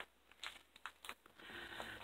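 Faint rustling and a few light taps of thick cardstock scrapbook album pages as a page is turned over, with a soft rustle growing near the end.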